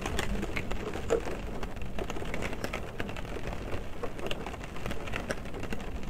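Rain drops hitting a car's roof and windows, heard from inside the cabin: many irregular drop hits over a steady hiss, with no let-up.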